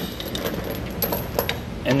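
Half-inch steel chain links clinking and rattling as the binder's hook is moved down one link, with several sharp separate clinks.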